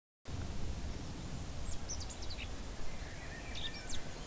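Outdoor background noise with a steady low rumble, starting abruptly from silence a quarter second in, with a few short bird chirps in the middle and near the end.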